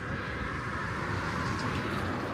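Road noise from a car passing close by, heard from a moving bicycle; it swells gently to a peak a little past the middle and eases off.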